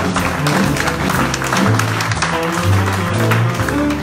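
Live jazz combo playing, with held upright bass notes prominent at the bottom under piano and frequent drum and cymbal strokes.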